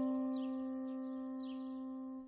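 Background music: one held chord fading slowly.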